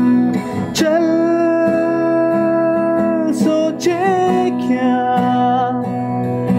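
A Hindi song with acoustic guitar and a sung voice holding long, steady notes.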